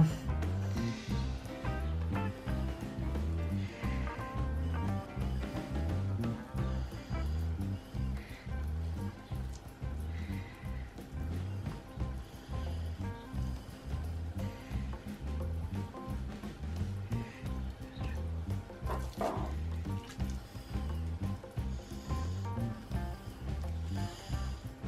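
Background music with a steady, repeating beat.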